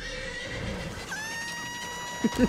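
An animated snowman character's long, high-pitched scream from a film trailer, held steady, its pitch stepping down about a second in.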